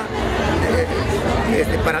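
Speech: a man talking, with the chatter of a crowd behind.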